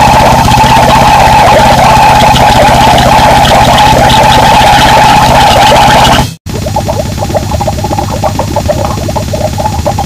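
Harsh noise music (gorenoise): a loud, dense wall of distorted noise that cuts out abruptly about six seconds in, then gives way to another noisy track with a fast pulsing low end.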